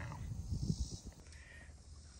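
Faint steady chirring of crickets, with a few low bumps and rumble in the first second.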